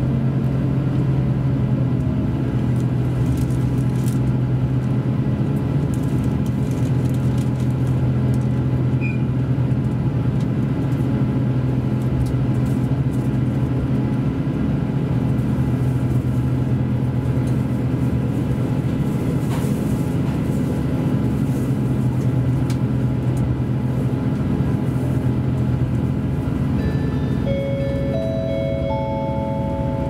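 KiHa 283 series tilting diesel railcar's engine running steadily at speed, heard from inside the passenger cabin. Near the end, an onboard announcement chime plays three rising notes.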